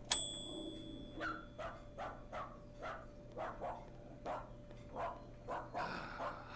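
A chrome counter service bell is struck once and rings out briefly. Right after it, a dog barks over and over, about two to three barks a second.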